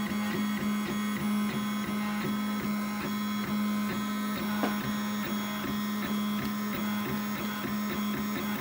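3D printer printing, its stepper motors giving a steady whine, with the Bulldog extruder feeding rubber filament through a bowden tube. A regular ticking, about three a second, runs through it.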